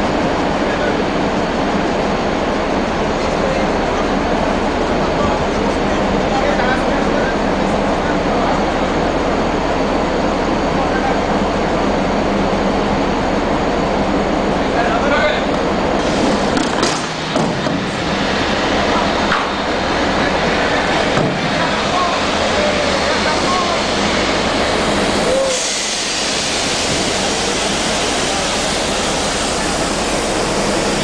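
Steady rumbling noise of wind and ship's machinery on an open deck, with a low hum underneath and faint voices now and then. About 25 seconds in, the sound turns brighter and hissier.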